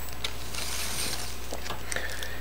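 Steady low background hum with an even faint hiss, broken only by a few faint light clicks.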